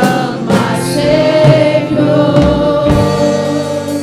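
Live gospel worship music: a woman sings lead into a microphone over electric guitar, holding one long note through most of it.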